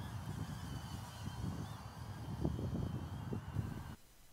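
Low, uneven outdoor rumble like wind on a microphone, with a faint steady high whine.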